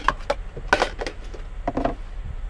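Clear plastic food container being lifted out of a storage bin and set on the countertop: a few light knocks and clatters, the sharpest a little under a second in, over a low steady hum.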